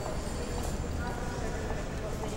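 Indistinct murmur of voices over a steady background noise.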